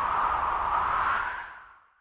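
A whoosh sound effect for an animated title intro: a long rush of noise that holds steady, then fades out near the end.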